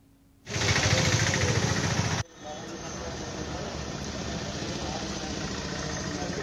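A loud rush of noise for under two seconds that cuts off suddenly, then a vehicle engine idling steadily with people talking in the background.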